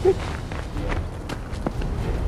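Footsteps of several people running on an asphalt road, a series of irregular taps.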